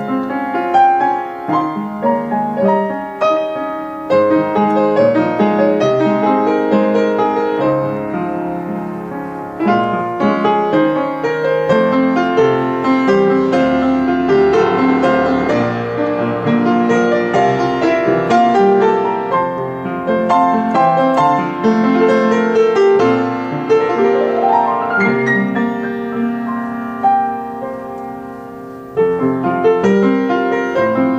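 Yamaha U1 professional upright piano being played: a flowing piece of many quick notes over held lower notes, with a rising run a little past the middle. It grows quieter toward the end, then a loud new chord is struck about a second before the close.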